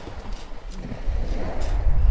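Wind buffeting the microphone in an uneven low rumble, over the steady hiss of surf washing on a shingle beach.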